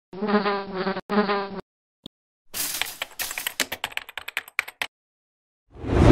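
Cartoon bee buzz sound effect, a steady buzzing tone in two parts over the first second and a half, then about two seconds of rapid computer-keyboard typing clicks, then a whoosh near the end.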